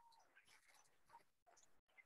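Near silence, with only faint scattered traces of sound and a brief full dropout near the end.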